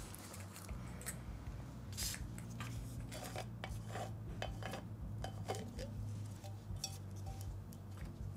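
A glass liquor bottle is handled and uncapped, giving scattered light clicks, taps and small clinks of glass and cap.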